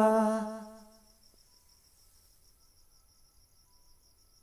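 A singer holds the final long 'aa' of a Bhojpuri jhumar song on one note, fading out within about the first second. After that there is near silence with a faint, high-pitched, evenly pulsing chirr.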